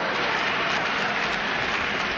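A large audience applauding and laughing, a steady dense clatter of many hands.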